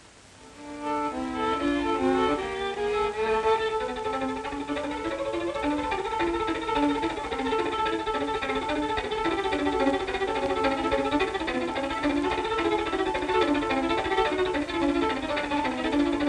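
Solo violin playing a quick-moving melody, starting about a second in, over a faint steady hiss.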